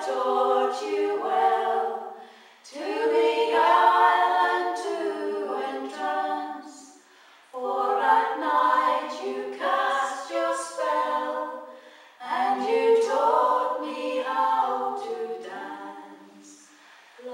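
Four women singing unaccompanied in close harmony, a folk song in phrases of about four to five seconds, with short breaths between them.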